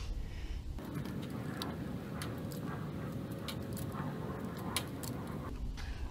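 Small battery-powered flip-switch lights being handled and set down on a brick ledge: scattered faint clicks and light scraping over a faint steady hum.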